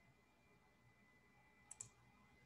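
Near silence, broken near the end by a quick pair of computer mouse clicks.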